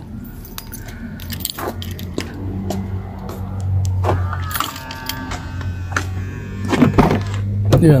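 Car keys jangling and clicking in hand over a steady low hum, with a short ringing tone in the middle. A car door latch clicks open near the end.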